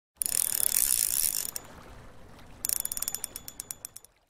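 Logo-intro sound effect of rapid mechanical clicking: a dense burst for just over a second, a short lull, then a second run of distinct clicks that slows and fades out near the end.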